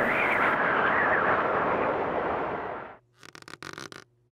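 A steady rushing, hissing noise lasts about three seconds, fades and stops; a few faint clicks follow near the end.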